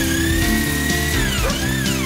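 Background music, with an electric drill whining under it as it drives a screw into a steel computer case. The drill's pitch sags briefly about one and a half seconds in.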